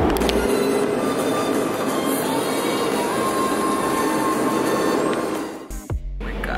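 Steady, loud rushing vehicle noise with a thin squeal in the middle. It drops away shortly before the end.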